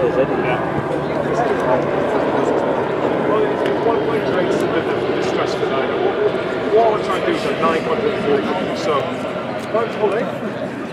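Indistinct chatter of many voices talking over one another at once, steady throughout, with no single clear speaker.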